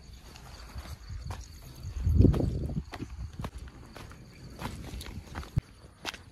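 Footsteps and scuffing on sandy ground with scattered clicks, loudest as a low rumbling scuffle about two seconds in. Crickets chirp steadily in the background.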